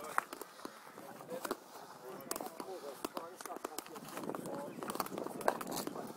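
Faint distant voices of boys and coaches, with scattered sharp taps and clicks from hurleys and a sliotar in play.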